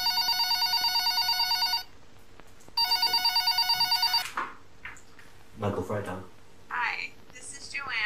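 Corded desk telephone ringing: two trilling rings about a second apart, the second cut off as the handset is lifted. Speech follows from about halfway through.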